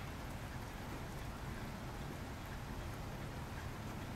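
Faint, steady room tone: a soft even hiss over a low hum, with no distinct events.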